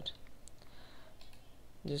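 Computer mouse button clicking: a short sharp click about half a second in, over faint room hiss, as a web link is clicked.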